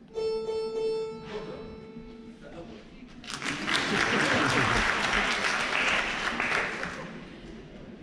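A single held note near A sounds for about two and a half seconds, typical of an orchestra's tuning note. About three seconds in, the audience applauds for roughly four seconds, then the applause dies away.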